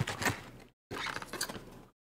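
Styrofoam clamshell takeout container being handled and its lid pulled open: a string of short foam scrapes and clicks.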